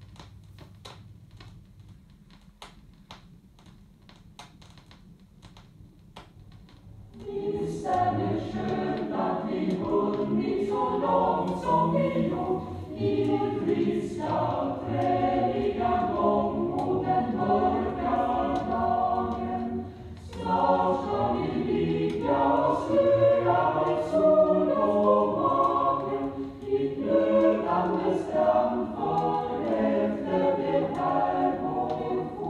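Vinyl LP playback: about seven seconds of faint clicks and surface noise from the record groove, then a choir suddenly starts singing. The singing is loud, with a brief dip about twenty seconds in.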